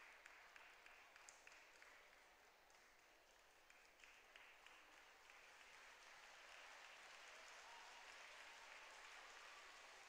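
Faint audience applause, a steady patter of many hands clapping, a little louder in the second half.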